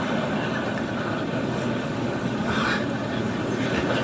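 A large audience of delegates laughing and murmuring all at once, a steady wash of crowd laughter filling a big assembly hall.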